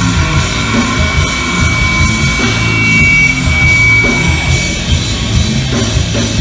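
Heavy metal band playing live and loud, with distorted electric guitars, bass and a pounding drum kit, recorded on a phone microphone. A high steady tone rings over the band from about a second in until near the five-second mark.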